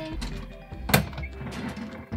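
A kitchen drawer in a camper van pushed shut with a single thunk about a second in, over background music.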